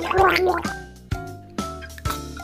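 Bubbly, gargling cartoon sound effect of foamy toothbrushing that stops about two-thirds of a second in, with light background music running under it.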